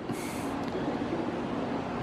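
Steady outdoor background rumble with a faint low hum, and a brief hiss at the very start.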